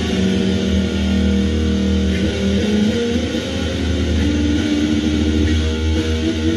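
Reverend electric guitar played in slow phrases of long, held notes that change pitch every second or so, over a steady low note.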